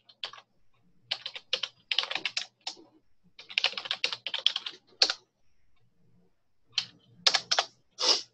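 Typing on a computer keyboard in quick bursts of keystrokes, with a pause of over a second before a few last keystrokes near the end.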